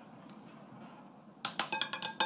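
Roulette ball dropping onto a spinning wheel and clattering over its metal pocket separators: a quick run of clicks and light pings starting about one and a half seconds in.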